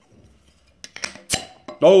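Crown cap being opened on a glass beer bottle: a couple of small metal clicks, then one sharp pop of released gas about a second and a half in.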